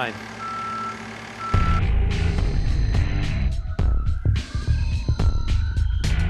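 Reversing alarm of construction machinery on a dam building site, beeping twice at about one beep a second. About a second and a half in, a much louder low rumble sets in, with scattered knocks and clatter.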